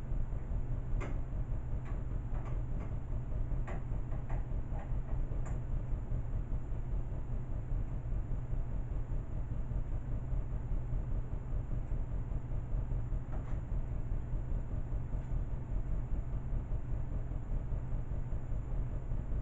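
A steady low rumble throughout, with a few light clicks and taps from handling objects in the first few seconds and once more later.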